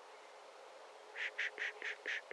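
A bird giving a rapid series of short harsh calls, about five a second, starting a little over a second in after a faint background hiss.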